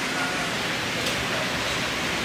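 Steady indoor mall ambience: an even rush of air-handling noise with faint, distant voices of shoppers.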